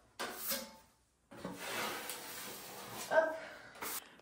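Steel taping knife scraping joint compound onto a taped plasterboard joint on the ceiling, laying the second fill coat over the tape. Two stretches of scraping: a short one, then after a brief gap a longer one of about two seconds.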